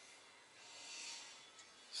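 A man's long, soft exhale, a faint breathy hiss that swells and fades over about a second.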